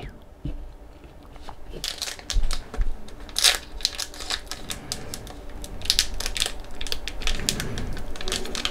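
Foil wrapper of a Skybox Metal Universe hockey card pack crinkling and tearing as it is handled and ripped open, in several short bursts of crackling rustles.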